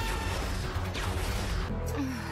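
Cartoon energy-beam blast sound effect, a noisy rushing crackle with a falling whistle about a second in, over background music.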